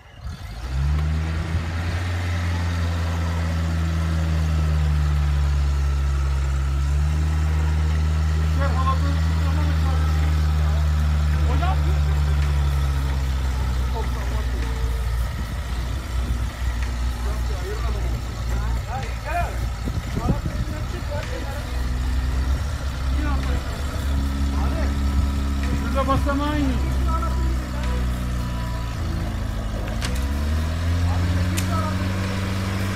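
Land Rover Defender's engine running steadily close by, its note turning rougher and less even about halfway through, with faint voices in the background.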